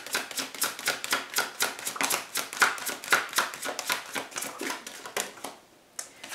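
A tarot deck being shuffled by hand: a rapid run of card clicks, several a second, that stops shortly before the end.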